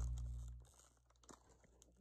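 A steady low hum fades out about half a second in. After it come a few faint crinkles of plastic snack packaging being handled.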